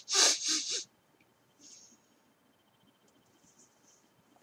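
A person's quick, breathy puffs through the nose, four in a row in the first second, like a short snort or a laugh through the nose. After that it is quiet apart from a couple of faint small noises.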